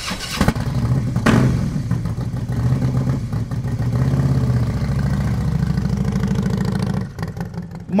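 Motorcycle engine running: it revs briefly twice in the first second or so, then runs steadily and cuts off abruptly about a second before the end.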